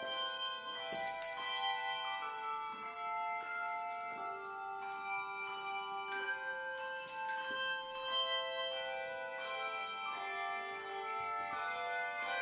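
Handbell choir playing a piece: many handbells of different pitches struck in turn, each note ringing on and overlapping the next.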